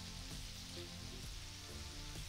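Faint, steady sizzling of hot fat on the stove: a butter-and-flour roux bubbling in a saucepan as it browns, with breaded chicken frying in oil beside it. Soft background music runs underneath.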